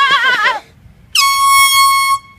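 A high, wavering vocal note for about half a second, then a loud, steady air-horn blast with a sudden start, lasting about a second.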